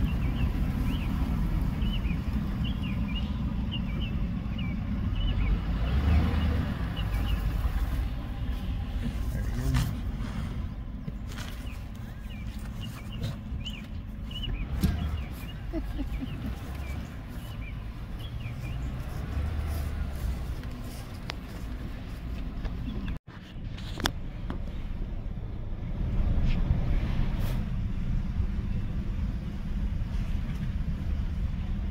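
Steady low rumble of wind on the microphone, with short high chirps over it now and then. The sound cuts out for a moment about three-quarters of the way through.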